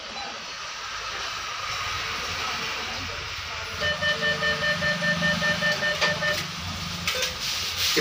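ATM cash dispenser working through a withdrawal: midway it runs for a couple of seconds with a low hum and a rapid, even pulsing, about five a second, as the notes are counted out, over a steady hiss.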